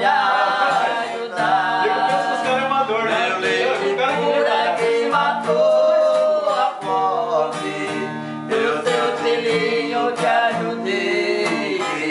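Acoustic guitar strummed and picked, accompanying a man singing a song in Portuguese.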